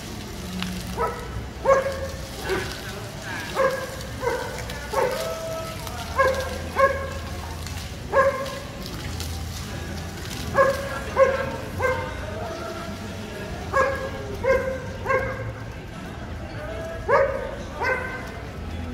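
A dog barking repeatedly, short barks singly and in pairs about a second apart, with a few longer pauses between runs.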